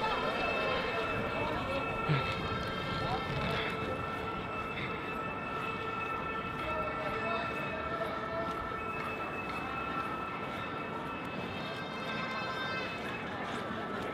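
Outdoor crowd background with indistinct voices, over a steady high-pitched tone that holds level throughout.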